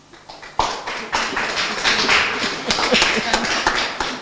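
A small audience applauding, the clapping starting about half a second in and continuing steadily.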